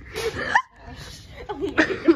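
A girl laughing in short breathy bursts, with a quick rise in pitch about half a second in.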